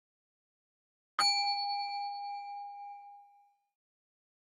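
A single bell-like ding, an edited-in sound effect, struck once about a second in and ringing out as it fades over about two seconds.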